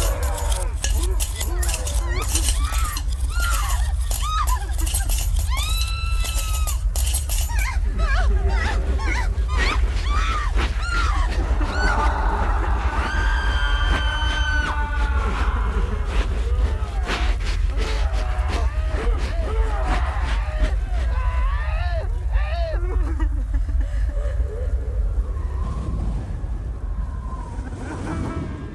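Experimental sound-art piece: a steady low drone under wordless voice-like sounds that glide up and down, with a dense spatter of sharp clicks over the first several seconds. The sound fades down near the end.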